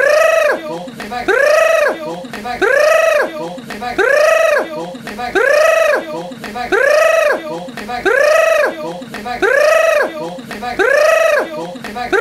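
A person's high-pitched vocal cry that rises and falls in pitch. The same cry repeats identically about every 1.3 seconds, some nine or ten times, like a looped recording.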